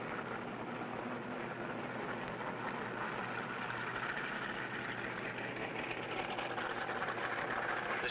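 Steady mechanical engine noise that grows a little louder toward the end, heard through an old film soundtrack.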